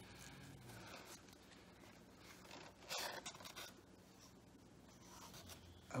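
Faint rustling and rubbing of a cloth snake bag being handled and pulled open, with a brief louder rustle about three seconds in.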